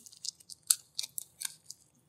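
Faint, irregular small clicks and light crackles from a potted plant and its leaves being handled and set down.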